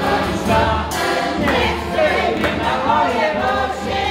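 A group singing a Polish folk song together to accordion accompaniment, with a steady low bass pulse under the voices and hand-clapping along.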